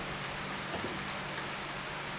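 A few faint clicks of handling as a cordless drill is fitted onto a scissor lift's threaded steel rod, over a steady low hiss and a faint low hum.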